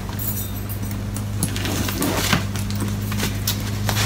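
Scattered rustles and light knocks from handling a handbag whose straps are still wrapped in padding as it is lifted, over a steady low hum.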